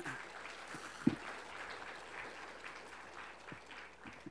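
Audience applauding, an even patter of many hands, with a single thump about a second in.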